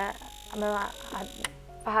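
A woman speaking in short phrases with pauses. About one and a half seconds in, a click sounds and a faint steady high whine cuts off.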